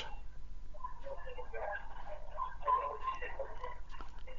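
A faint, muffled voice talking over a steady low hum, well below the level of the surrounding speech.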